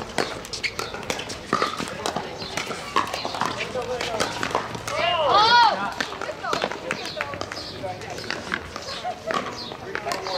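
Pickleball paddles striking plastic balls on several courts: sharp, irregular pops, with players' voices in the background. A loud call from one player about five seconds in.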